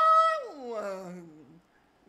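A man's unaccompanied singing voice holding a high sustained note, then sliding down in a long falling glide and fading out about a second and a half in.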